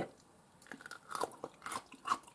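Crunching of a lightly salted (malosol) cucumber being bitten and chewed, a run of short crisp crunches starting about half a second in. The crunch is the sign that the quick-brined cucumber is still crisp after two days in brine.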